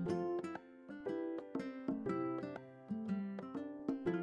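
Background music of plucked string notes, played at a moderate, unhurried pace.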